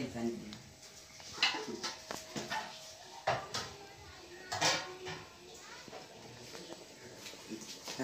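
A long metal spoon scraping and clicking against the side of a cooking pot while rice pudding is stirred, in light irregular clicks.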